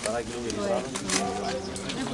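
Voices of people talking over one another, several conversations at once.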